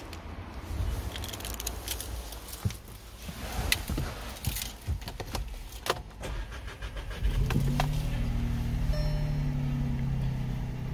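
Keys rattling and clicking in the ignition, then about seven seconds in the Audi A1's 1.0 TFSI three-cylinder petrol engine starts and settles into a steady idle.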